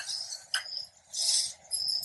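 Light kitchen handling of a spoon and bowls: a small click about half a second in and a brief scrape near the middle. A high chirping repeats in the background.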